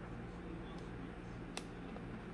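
Quiet room with a steady low hum, broken by a single sharp click about one and a half seconds in and a fainter one before it: a cockatoo's beak working on a hard plastic Mr. Potato Head toy.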